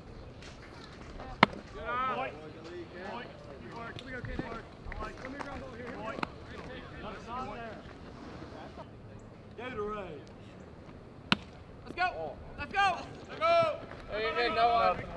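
A bat strikes a pitched baseball once with a sharp crack about a second and a half in. Players and spectators shout in short bursts afterwards, with a second, fainter knock late on.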